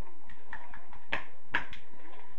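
Scattered sharp claps over a steady murmur, the loudest three coming close together a little after a second in.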